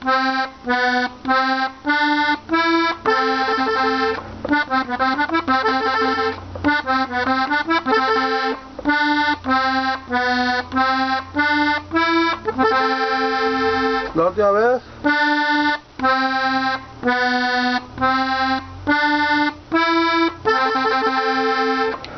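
Hohner Corona II Classic diatonic button accordion tuned in G, played slowly on the treble buttons: a string of short, separated notes, with a quicker run of notes about four to eight seconds in.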